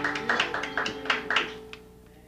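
Music: the closing bars of a song, a string instrument strummed in a quick run of chords that ring out and fade away.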